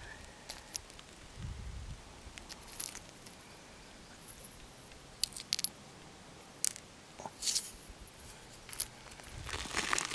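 Small stones clicking against each other and the gravel as rocks are picked up and handled by hand: a dozen or so faint, sharp clicks scattered irregularly, with a soft low bump about one and a half seconds in.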